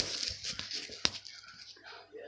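Close handling noise of plastic action figures and a hand brushing against a phone's microphone, with a sharp click about a second in.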